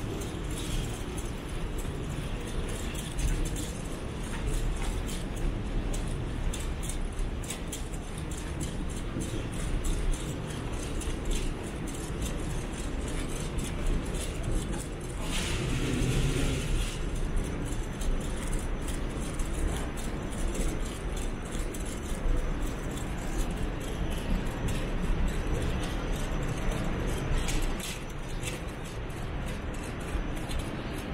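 Steady low rumble and hum of a large airport terminal corridor, with frequent light clicks and rattles throughout. A brief louder rushing sound comes about fifteen seconds in.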